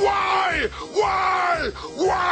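A cartoon villain's gravelly man's voice yelling: the same short shout, falling in pitch, repeated about once a second, looped twice with a third starting at the end.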